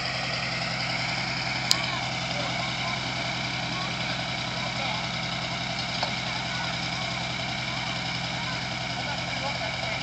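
Chevrolet pickup truck's engine idling steadily after a burnout, with people talking in the background. A single sharp click sounds a little under two seconds in.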